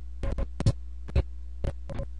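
Steady low electrical hum, broken by about seven short, sharp clicks at irregular intervals.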